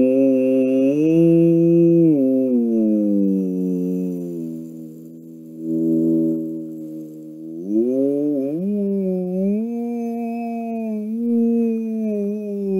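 A man's voice imitating a whale call: long, drawn-out 'ooh' moans that slide slowly up and down in pitch. They fade for a moment about halfway through, then swell again.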